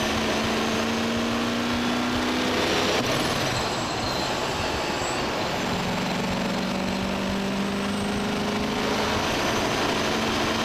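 Car travelling at speed on a road: steady wind and road noise over an engine note that rises slowly during the first couple of seconds and again from about six seconds in.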